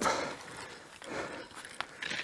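Footsteps through deep snow, faint and uneven, with a single sharp click near the end.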